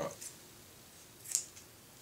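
A pair of scissors snipping once through a small piece of blue tape, a single short, sharp cut a little past halfway in.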